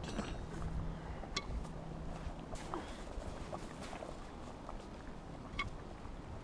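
Wood fire in a fire pit crackling faintly, with a few sharp pops scattered over a low rumble.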